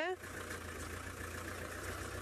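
Engine of an open safari vehicle running steadily at low speed as it drives slowly along a dirt track, heard from on board as a steady low drone.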